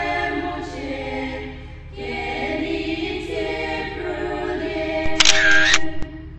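A choir of several voices singing without instruments, the pitch moving from note to note. Near the end comes a short, loud burst lasting about half a second that stands out over the singing.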